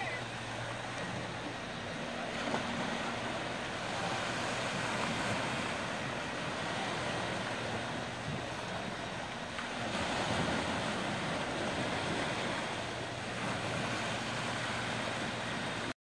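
Small waves washing onto a sandy beach: an even wash of surf that swells a little every few seconds.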